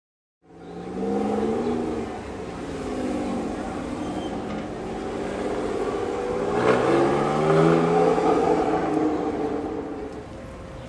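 Sports car engine pulling away, its revs rising and falling in pulls. About seven seconds in there is a brief crack, then the revs climb again to the loudest point.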